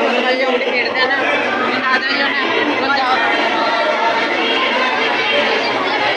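A crowd of many people talking at once, a dense, steady babble of overlapping voices with no single voice standing out.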